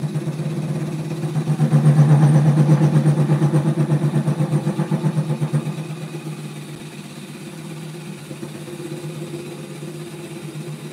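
A wood lathe spinning a cherry blank at reduced speed while a gouge cuts across its face, the cut pulsing in a rapid beat about five or six times a second. The cutting is loudest in the first half and eases off about six seconds in.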